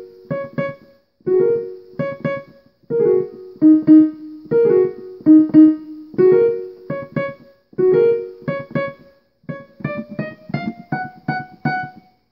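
Electronic keyboard in a piano voice playing a short beginner rote piece: a chord of notes struck together about every one and a half seconds, each followed by a few single notes, in repeating phrases. Near the end a higher note is struck three times.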